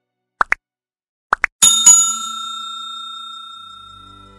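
Like-and-subscribe end-screen sound effect: two quick double blips as the buttons are pressed, then a notification-style bell chime struck twice that rings on and slowly fades.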